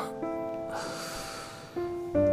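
Background music: soft sustained keyboard notes changing chord every second or so.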